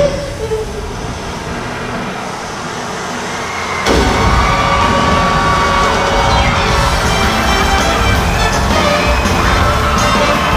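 Show music plays, then about four seconds in a sudden loud blast sets off a sustained rushing noise under the music as a stage water-and-mist effect erupts and a jet of water sprays over the pool.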